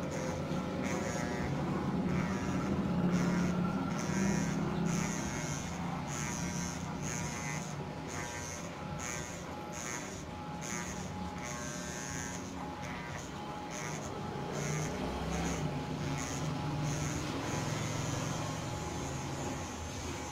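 Electric hair clippers running as a barber trims the hair on top of the head, with short higher bursts recurring every second or so.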